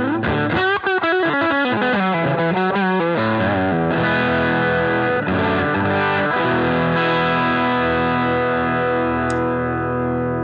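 Overdriven electric guitar, a Telecaster-style guitar through the DCW Exoplex preamp/boost and DCW Sunrise Overdrive pedals into a Vox amp. It opens with a fast lead run of bent, wavering notes over the first few seconds, then settles into held notes and chords that ring out, re-struck a few times.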